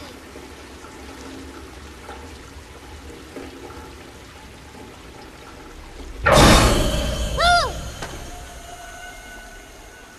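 Rain and water running along a flooded street gutter, a steady rush. A little over six seconds in comes a sudden loud surge of noise that fades over a second or so, and about a second later a short voice-like sound that rises and falls in pitch.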